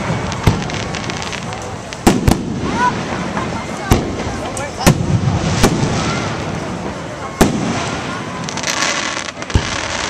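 Aerial fireworks shells bursting in sharp booms, about eight over ten seconds, with a brief patch of crackling near the end.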